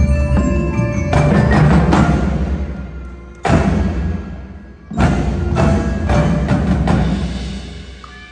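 Indoor drumline playing its show: marimbas and other mallet percussion over a deep held bass, with two sudden full-ensemble hits about three and a half and five seconds in, each ringing away, then a few more strokes as the music dies down near the end.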